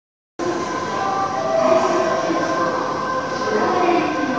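Odakyu 50000-series VSE Romancecar's music horn playing its do-mi-so-do tune again and again as the train comes into the station, the notes stepping in pitch over the rumble of the approaching train.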